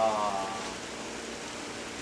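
A brief drawn-out voice sound at the start, then a steady hiss of background noise with a faint low hum underneath.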